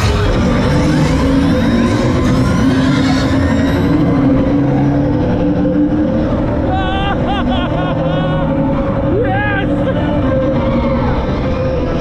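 TRON Lightcycle Run roller coaster train rushing along its track after the launch, with wind noise and the ride's on-board music soundtrack. Riders yell and scream several times in the second half.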